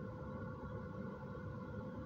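Quiet car-cabin background: a faint low rumble with a thin, steady hum.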